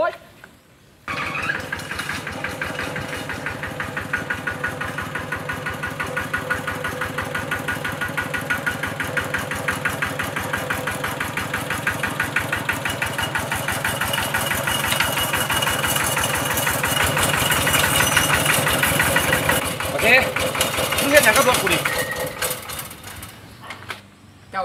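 Motorcycle engine catching about a second in and then running at a fast, even beat, growing slowly louder before fading near the end.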